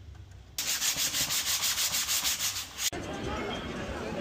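Quick, even rubbing or scraping strokes, several a second, starting abruptly and cut off sharply; then a busy crowd hubbub of voices.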